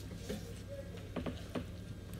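Eating sounds as biryani is mixed and eaten by hand from a plate: a few short, soft clicks and smacks, most of them in the second half, over a steady low hum.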